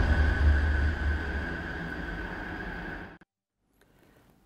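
The dying tail of a TV news programme's title sting: a low rumble and a steady high tone fading after a cinematic hit, then cutting off suddenly about three seconds in.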